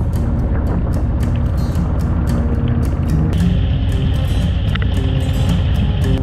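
Harley-Davidson V-twin motorcycle engine running steadily while riding, heard from the rider's own bike, with background music playing over it.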